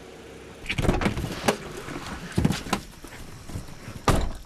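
Several irregular knocks and thumps over a steady low rumble, a cluster about a second in and two more after two and a half seconds.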